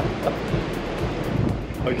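Ocean surf and wind on the microphone, a steady rushing noise, over background music.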